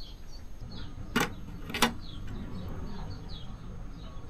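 Two sharp plastic clicks about half a second apart as a multi-pin wiring connector inside an EcoFlow Delta Max power station is worked out of its socket. This is the plug suspected of a poor contact in one of its sockets, the cause of the unit not turning on.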